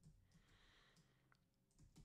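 Near silence with a few faint computer keyboard key clicks as code is typed.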